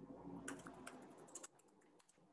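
Faint computer keyboard typing: a quick run of about a dozen keystrokes between half a second and a second and a half in.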